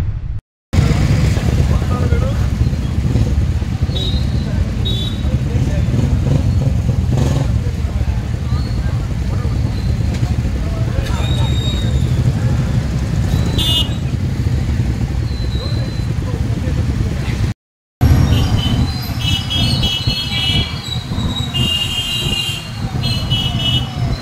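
A group of motorcycles, a Royal Enfield Bullet among them, running and moving off together with a dense engine rumble. Horns toot repeatedly in the last few seconds.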